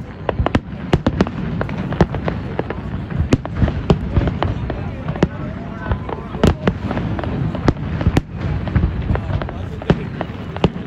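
Distant aerial firework shells bursting in quick, irregular succession: a continuous low rumble studded with many sharp bangs and crackles.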